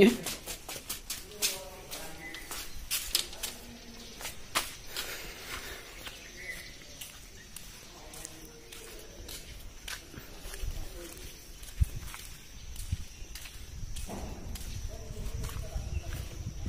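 Faint voices in open air with scattered sharp clicks and footsteps during the first few seconds, and a steady high-pitched whine in the background from about five seconds in.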